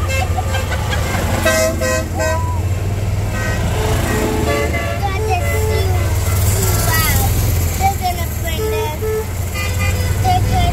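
Golf cart horns beeping in short, repeated toots, often in pairs, amid people's voices calling out, over a steady low rumble of moving carts.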